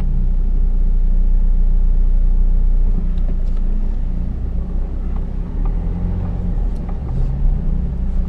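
Four-wheel drive's engine running at low revs while driving slowly, a steady low drone heard from inside the cab, its pitch shifting up and down a few times.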